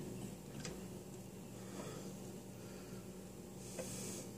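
A few faint clicks and taps as the pump head of a Corsair H60 liquid CPU cooler is worked by hand into its mounting bracket, over a low steady hum.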